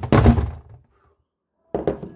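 Thunks and knocks of something being handled under a kitchen sink, the loudest in the first half-second; the sound then drops out completely for about a second before another knock near the end.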